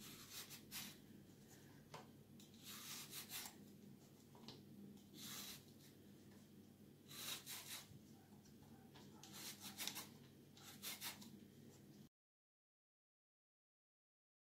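Y-shaped vegetable peeler scraping strips of skin off a zucchini, in short strokes at uneven intervals about a second apart. The sound cuts out completely near the end.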